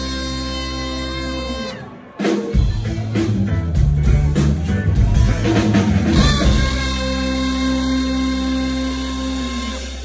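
Live band with electric guitar, bass, drums and trumpet. Long held notes stand over the band; the music drops out briefly about two seconds in, comes back with the drums, and settles into another long held chord near the end.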